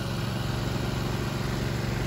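An engine running steadily at idle, a low even hum with no change in speed.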